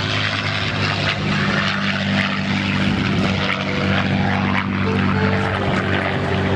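Grumman F8F Bearcat's Pratt & Whitney R-2800 radial engine and propeller droning steadily as the fighter makes a pass, a little louder from about two seconds in.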